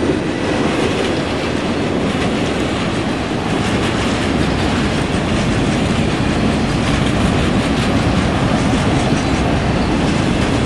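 Enclosed autorack freight cars rolling past at close range, steel wheels running over the rails with a steady, loud rumble and clatter.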